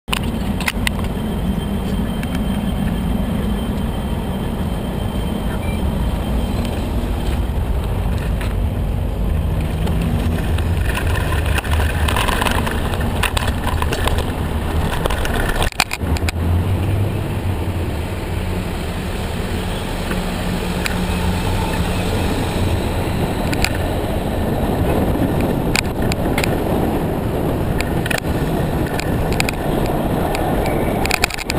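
Steady rushing wind and road rumble on a handlebar-mounted camera as a bicycle is ridden along a paved street, with frequent short rattles and knocks from the bike over bumps. A motor vehicle's low hum rises and fades at times, as traffic passes.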